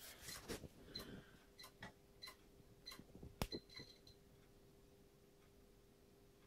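Failing 2.5-inch portable hard drive making faint, irregular ticking clicks like a floppy drive stepping, for about the first four seconds, over a faint steady hum. The clicking is the sign of a drive in failure.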